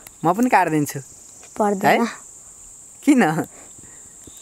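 Insects trilling steadily at a high pitch, with three short spells of a person's voice over it.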